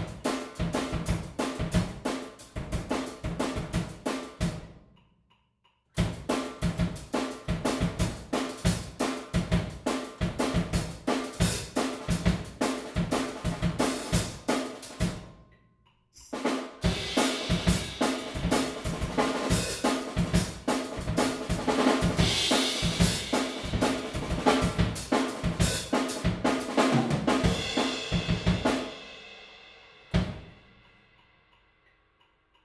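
Acoustic drum kit played fast in a drum and bass beat, with rapid snare, kick and hi-hat hits. The playing breaks off twice for about a second, once about five seconds in and again around the middle. The second half is thick with cymbal wash, and the playing stops and rings out just before the end.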